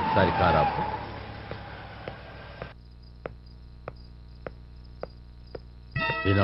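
A car's engine and road noise fading away over the first few seconds, with a brief voice at the start. After a sudden cut the sound drops to quiet night ambience: crickets chirping, with a soft click repeating nearly twice a second.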